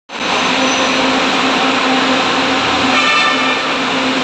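LRTA Class 2000 light rail train at the platform, giving a loud steady rushing noise with a low pulsing tone and a brief higher whine about three seconds in.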